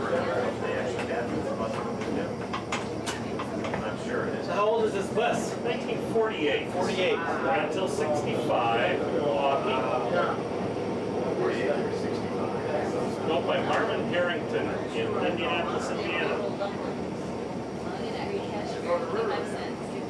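Inside the cabin of a vintage transit bus under way: a steady engine drone, with passengers' indistinct talk over it.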